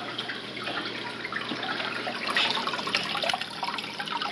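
Steady trickling and splashing of water from running aquarium filters.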